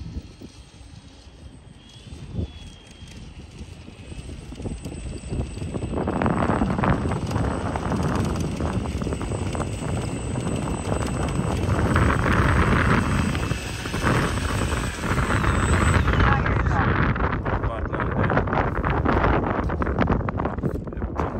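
Gusty wind buffeting the microphone: fairly quiet at first, then rising loud about six seconds in and staying loud, with irregular rushes.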